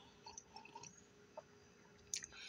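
Faint sips of coffee from a mug: a few soft sipping and swallowing sounds in the first second and one more a little later, over near-silent room tone.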